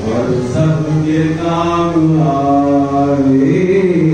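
A voice chanting melodically, in long drawn-out notes that glide up and down.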